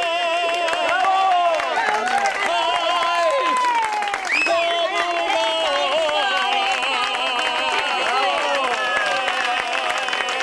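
Audience clapping and cheering, with many voices shouting over the applause. It starts just as a long sung note with vibrato breaks off.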